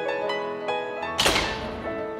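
Soft piano music, with a single loud bang about a second in whose crack dies away over about half a second.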